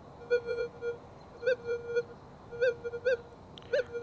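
Minelab Manticore metal detector with its 5x8-inch M8 coil giving short target beeps, all at one steady pitch, in irregular clusters as the coil is swept over a small gold nugget. The weak responses come with the coil near the farthest distance at which it still picks up the nugget.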